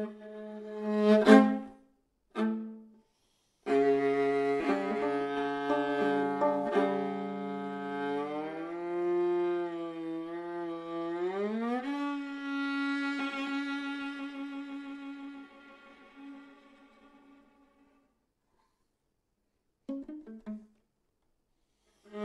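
Solo viola playing held double stops, with a sharp accented attack about a second in and a short pause. A long double stop follows whose upper note slides upward in a glissando, then one note is held and slowly fades to silence, with a brief short note near the end.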